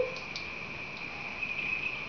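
A steady high-pitched tone holds over faint room noise.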